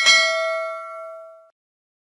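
Notification-bell 'ding' sound effect: a single struck bell tone with several ringing partials that fades and cuts off abruptly about a second and a half in.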